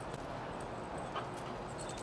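A few faint taps from a puppy moving about with a ball on a concrete patio, over a quiet outdoor background.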